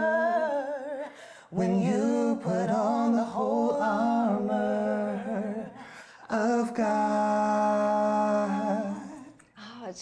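A cappella singing of a worship song, the close of the verse: a few long held notes with a wavering pitch that fade away about nine seconds in.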